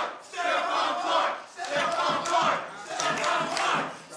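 A man's voice chanting the name "Stephon Clark!" over and over, three shouts of about a second each, with a crowd's voices in it.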